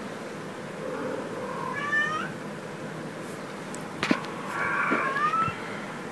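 Kitten meowing twice: a short, rising meow about two seconds in and a longer meow near the end, with a light tap just before the second.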